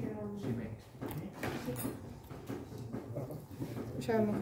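Faint voices in the room, with a few soft clicks of instruments being handled.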